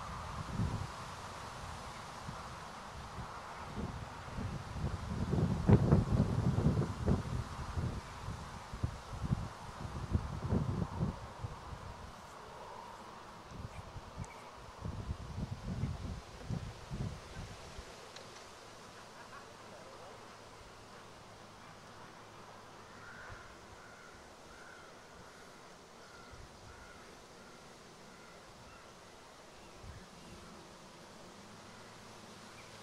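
Wind gusting on the microphone, loudest about six seconds in, dying down after about eighteen seconds. Near the end a crow caws about eight times in a quick run.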